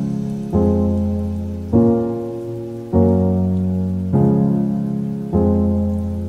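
Background music: slow keyboard chords, a new chord struck about every second and a quarter, each fading until the next.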